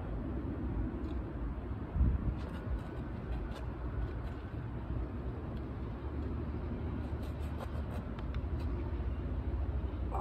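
Steady low rumble of distant traffic, with a single thump about two seconds in and a few faint clicks later on.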